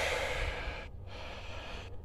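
Soft breathy hiss that fades over the first second or so, like a person breathing close to a phone microphone, over a steady low room rumble.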